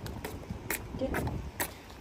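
Shoes scraping and scuffing on wooden boardwalk planks: several short scrapes about half a second apart, from feet not being picked up. A low wind rumble runs underneath.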